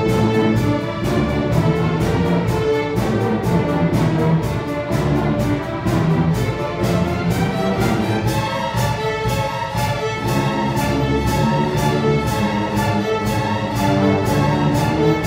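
A large massed student string orchestra of violins, violas, cellos and double basses playing a lively piece, driven by a steady pulse of short accented bow strokes, about three a second.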